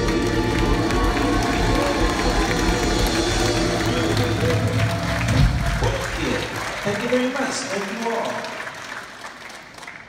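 Live soul band with horns, drums, keyboards, guitar, bass and group vocals holding a final chord that ends about six seconds in. Audience applause follows and dies away.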